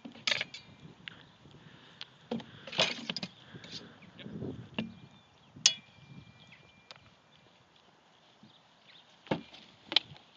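Swords clashing against each other and knocking on wooden shields in a sparring bout: a series of sharp strikes in quick clusters. One strike about halfway through leaves a blade ringing for a second or so.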